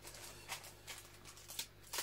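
Hands handling paper stickers and small items on a table: faint rustling with a few light taps and clicks.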